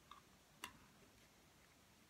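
Near silence: room tone, with one faint short click a little over half a second in.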